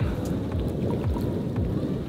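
Wind buffeting the microphone at the seafront: a loud, unsteady low rumble.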